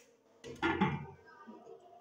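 A glass lid set down on a metal kadai of boiling chickpeas, about half a second in, together with a brief voice.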